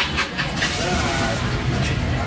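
Busy street-market background of motorbike engines and people talking nearby, with a few short slurps from a spoonful of noodle soup near the start.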